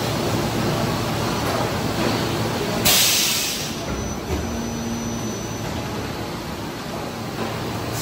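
A PET preform injection moulding machine and its take-out robot running, with a steady industrial machine drone. About three seconds in comes a short, loud hiss of air.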